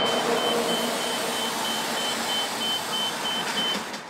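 City transit bus idling at the curb, its engine running steadily, with a high electronic beep repeating about three times a second that stops just before the sound cuts off.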